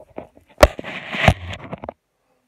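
Rustling, scraping and knocking from a phone being handled and moved around, with a sharp knock about half a second in that is the loudest sound. It cuts off abruptly near the end.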